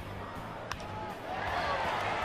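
Ballpark crowd murmur, broken by a single sharp crack of a baseball bat hitting a pitch about two-thirds of a second in. The crowd noise swells after the hit.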